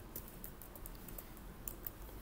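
Computer keyboard being typed on: a few scattered, faint key clicks, two of them a little louder near the end.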